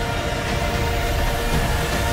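Film trailer score with several sustained tones held steady over a loud, dense low rumble of sound effects.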